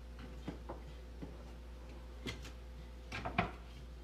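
A few light knocks and clicks of kitchen items being handled on a wooden cutting board by the stove, with the most distinct cluster near the end. A steady low hum runs underneath.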